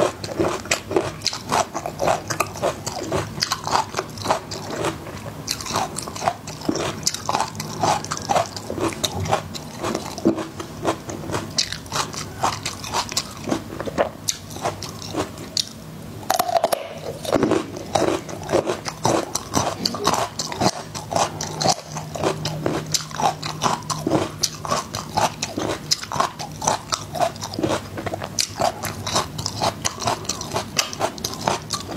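Crunching and chewing of peeled garlic cloves: crisp bites and wet mouth sounds going on throughout, with a short lull about halfway before a fresh clove is bitten into.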